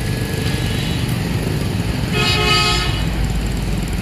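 Road traffic running steadily, with a vehicle horn sounding once for just under a second about two seconds in.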